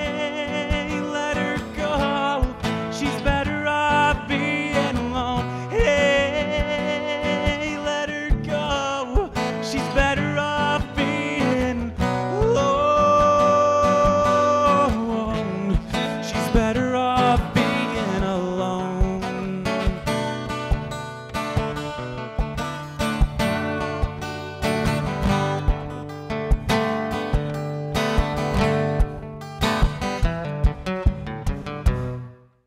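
Live solo acoustic performance: a man sings over a Cort acoustic guitar played with fast, percussive flat-picking, including one long held sung note near the middle. In the last third the singing drops away, leaving rapid, crisp picked notes.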